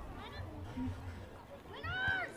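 Shouts at a youth football match: a short high call a fraction of a second in, then a louder, longer call that rises and falls near the end as the ball goes up.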